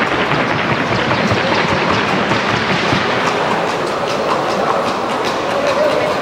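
Hooves of a Colombian criollo filly in the trocha gait, beating a rapid, even clatter on the hard track.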